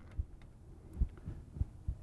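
A few soft, low handling knocks as bolts are started into the bonnet of a Fisher EZR gas pressure regulator, the clearest about a second in.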